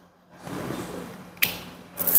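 Puffing on a cigar while lighting it with a torch lighter: about a second of breathy draws, then a single sharp click about one and a half seconds in.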